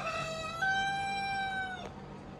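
A rooster crowing: one long drawn-out call that steps up in pitch about half a second in, holds steady, then breaks off just before the end.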